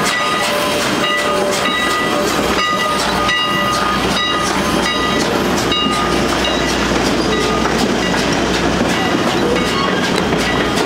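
Steam train of passenger coaches rolling past, wheels clicking over the rail joints with short high-pitched squeaks repeating through the first half. A low rumble builds in the second half.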